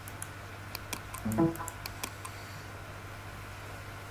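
Computer mouse clicks, several sharp ones in the first two seconds or so, with a brief pitched sound about a second and a half in that is the loudest moment. A steady low hum runs underneath.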